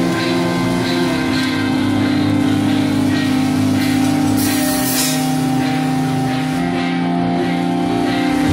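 Metalcore band playing live: electric guitars holding long, steady chords over drums.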